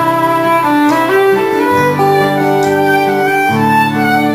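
Instrumental break in an acoustic country-folk song: a fiddle plays a melody of held notes over strummed acoustic guitars.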